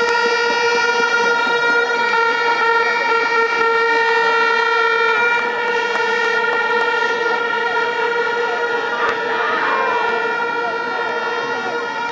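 A steady horn-like tone held without a break and without changing pitch, over the chatter and shouts of a large crowd.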